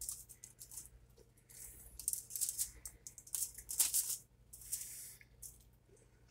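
Aluminium foil on a baking tray crinkling in several short rustles as a slice of pizza is pulled off it by hand.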